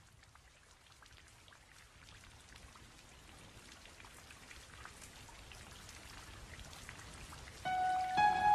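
Faint, steady patter of rain, with many small drops ticking, slowly growing louder. Soft music with held notes comes in near the end.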